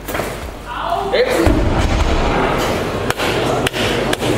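A loaded barbell with rubber bumper plates crashing down onto the wooden lifting platform with a heavy thud about a second and a half in, on a missed lift that leaves the lifter sitting on the platform. Two sharp knocks follow near the end.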